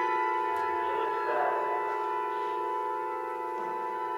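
Symphony orchestra holding a soft, sustained chord of steady tones that slowly fades.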